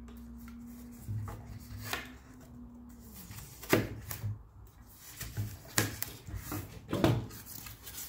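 Snap-off utility knife drawn through foam board along a wooden ruler, giving scratchy cutting strokes with a few sharp clicks and thuds as the foam parts. A steady low hum stops about three seconds in.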